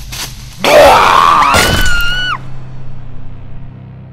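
A loud, high-pitched human scream. It bursts in just over half a second in, rises in pitch, holds, and cuts off abruptly a little over two seconds in.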